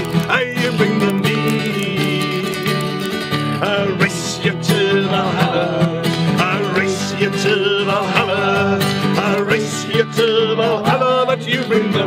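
An acoustic guitar strummed steadily while a man and several other voices sing a folk song together.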